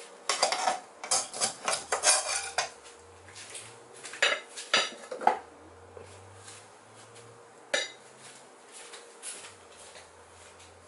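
Metal spatula scraping and clattering against a nonstick frying pan: a quick run of scrapes in the first couple of seconds, then a few louder clinks about four to five seconds in. A single sharp click comes near the end.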